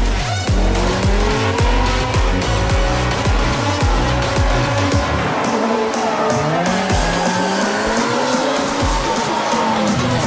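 Drift cars sliding through the course, engines revving up and down and tyres squealing. Electronic dance music runs underneath, its steady kick-drum beat dropping out about halfway through.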